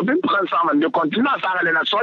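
Speech only: a person talking without pause over a telephone line, with the thin sound of a phone call.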